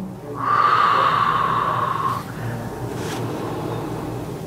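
A person breathing out in one long breath of about two seconds, close to the microphone, while the neck is held in position for a chiropractic adjustment.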